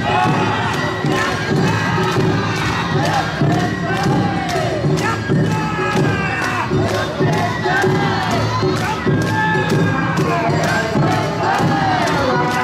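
Awa Odori dance music and calls: a festival band's drums and bell keep a steady quick beat while many dancers shout rising-and-falling chanted calls over it.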